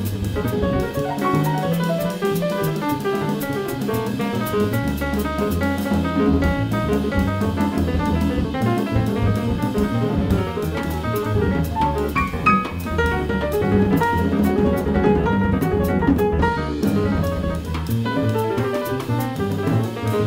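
Live jazz piano trio playing: piano, double bass and drum kit together. Busy drum and cymbal strokes run over piano lines and a moving bass line.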